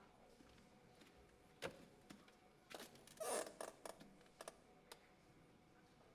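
Near silence: quiet hall room tone broken by a few scattered faint clicks and knocks, with a short rustle a little over three seconds in.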